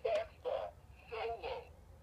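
Four short, breathy voice-like syllables without clear words.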